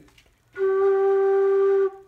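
A homemade six-hole flute in F playing one steady, held G note that starts about half a second in and stops just before the end. The note is in tune.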